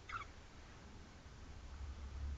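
Quiet room tone with a steady low hum, and one brief high-pitched chirp right at the start.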